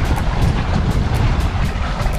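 Steady low rumble with a hiss over it: wind and motor noise aboard a small fishing boat at sea.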